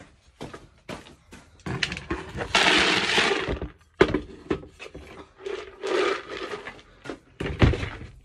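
Dry horse feed being scooped and poured into a bucket: a run of knocks and clatters, with a pouring rush about two seconds in and a softer one around six seconds.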